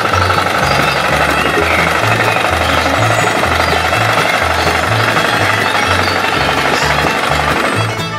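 Small tractor engine rattling steadily at a rapid beat, over background music with a repeating bass line.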